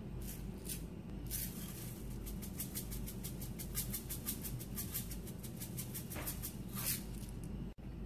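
A spice shaker jar of fennel seeds being shaken, the seeds rattling inside it and falling onto a salmon fillet in a frying pan. The shakes come in a fast, even run of about seven a second, starting about a second in and stopping near the end.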